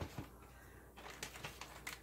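Faint crinkling and rustling of a plastic zipper bag being handled and opened, with a few light clicks.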